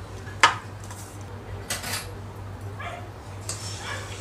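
A few short, sharp sounds over a low steady hum. The loudest comes about half a second in, with weaker ones around two, three and three and a half seconds in.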